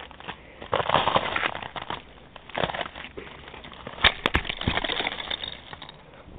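Ice-glazed snow, leaf litter and twigs crunching and crackling in irregular bursts, with a few sharp clicks about four seconds in.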